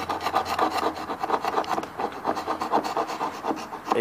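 Hand scraper rubbing back and forth on a small turned wooden furniture leg in quick strokes, several a second, scraping off old red-green paint and lacquer to bare wood.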